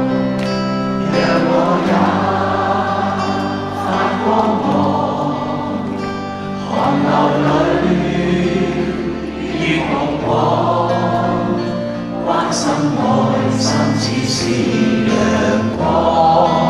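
A large audience sings a Cantopop song along in chorus with a live band, led by a male singer on microphone.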